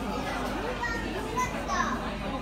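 Background chatter of diners in a busy restaurant, with children's voices among it.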